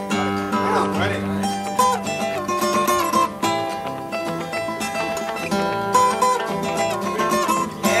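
Steel-string acoustic guitar played in a run of quick picked notes and chords, each note ringing on.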